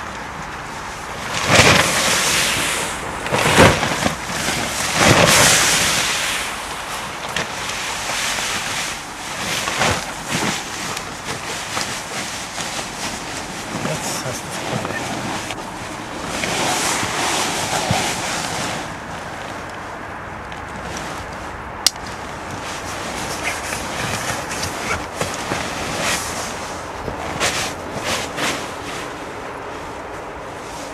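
Nylon fabric of a Fatboy inflatable air lounger whooshing and rustling in several rushes as it is swung through the air to scoop air into it. The rushes are loudest and come quickly in the first few seconds, with one more a little past the middle.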